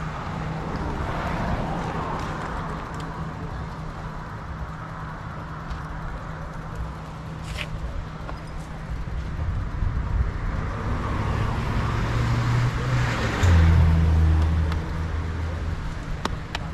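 Vehicle engines on a nearby road: a steady low hum with vehicles swelling past, the loudest coming through about thirteen and a half seconds in and fading by fifteen.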